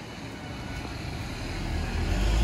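Street traffic going by, with a motor scooter coming up the road, the noise swelling near the end.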